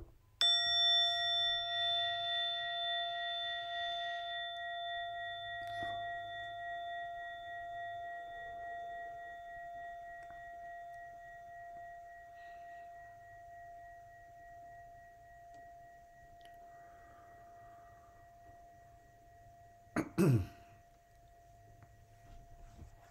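A meditation chime struck once, ringing with several steady tones at once and slowly fading away over about twenty seconds until barely audible; a sharp click comes just before the strike. A throat clearing near the end.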